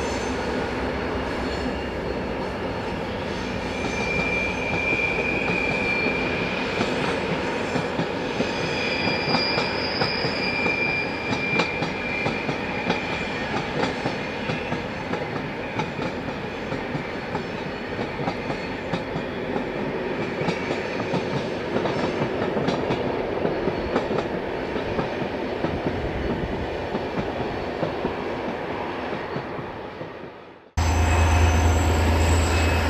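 GM-built diesel locomotive and its passenger coaches running past, a steady rumble of engine and wheels on rail, with a high wheel squeal on and off from about four to thirteen seconds in. The sound fades out near the end.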